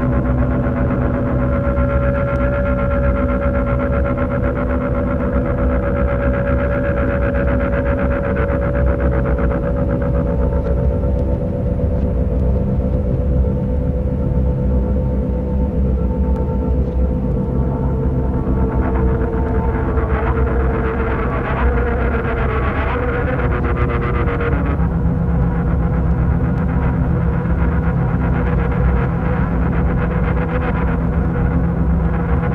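Instrumental passage of a psychedelic doom metal song: a loud, dense wall of heavy, sustained droning chords over a deep low rumble, with no vocals. The held chord shifts near the end.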